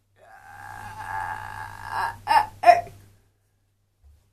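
A child's voice giving one long, high, drawn-out wail, then two short loud cries about half a second apart.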